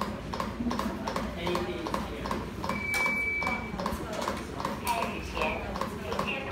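CPR training manikin clicking with each chest compression, about two clicks a second in a steady rhythm. About three seconds in, a single steady beep sounds for about a second.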